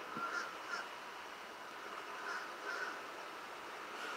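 A few short, faint bird calls, cawing in character, over a steady faint outdoor background hum.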